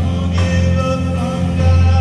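A live church worship band: a keyboard holding sustained bass notes and a drum kit with cymbals, with a voice singing over it.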